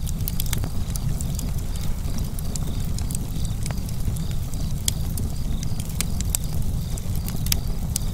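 Wood fire crackling: scattered sharp pops over a steady low rumble.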